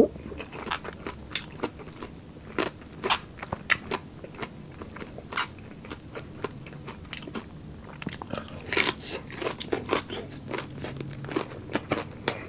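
Close-miked chewing and crunching of crispy deep-fried pork, a run of sharp crackles with a denser burst of crunches about nine seconds in.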